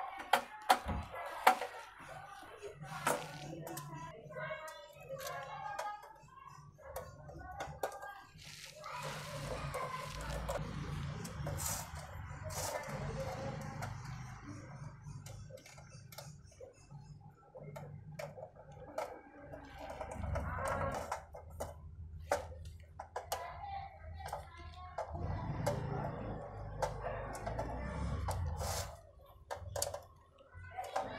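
A screwdriver drives the cover screws back into a Zebronics computer power supply's sheet-metal case: scattered clicks and scrapes of the tool and screws on metal, the loudest about a second in. Voices and music carry on faintly in the background.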